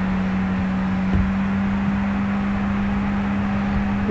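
A steady low electrical hum with an even hiss behind it: the recording's background noise, heard plainly with no speech over it. There is a faint low knock about a second in.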